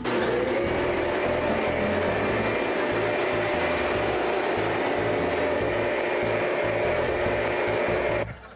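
Upright vacuum cleaner running: the motor spins up with a rising whine at the start, then runs loud and steady.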